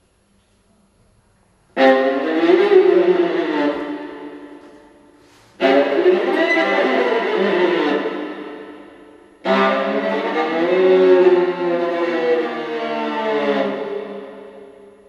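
Solo viola playing contemporary music: after a short silence, three bowed phrases, each attacked sharply, sliding in pitch and then fading away.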